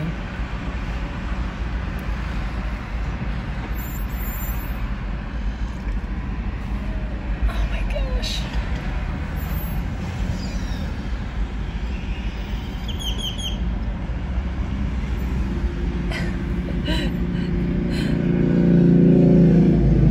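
Steady traffic rumble from a multi-lane road. Near the end a car passes close by, its engine and tyre noise building to the loudest point.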